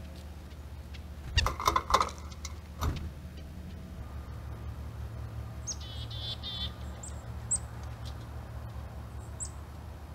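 A cluster of sharp clattering knocks about one and a half to two seconds in and one more near three seconds. Then small songbirds call at the feeders: a quick run of high repeated notes around six seconds in and several thin, high, falling chirps after it, over a steady low rumble.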